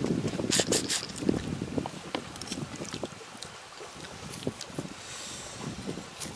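A man chewing a mouthful of grilled fish with wet lip smacks, busiest in the first second or so, over a rumble of wind on the microphone.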